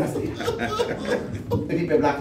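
A man talking with chuckling laughter.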